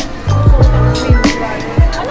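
Background music with a steady drum beat and a bass line, about two beats a second.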